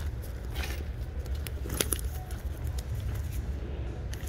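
A leather handbag being handled: a few rustles and light clicks of its metal hardware over a steady low rumble.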